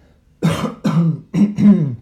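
A man clearing his throat and coughing in three loud, voiced bursts, starting about half a second in. He is losing his voice.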